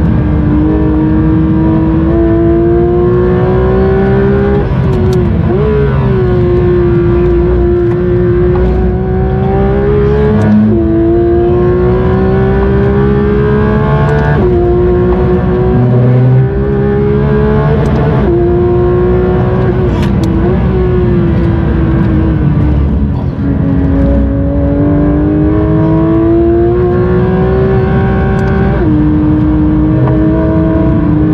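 Porsche 992 GT3 RS's naturally aspirated 4.0-litre flat-six, heard from inside the cabin while driven hard on a circuit. Its note climbs steadily between about six sudden jumps in pitch at quick PDK gear changes.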